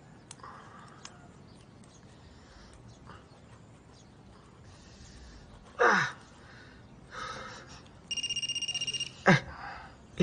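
A mobile phone ringing, starting about eight seconds in: a fast electronic trill of high, steady beeps that keeps going. Before it there are only faint small clicks and a couple of short grunts.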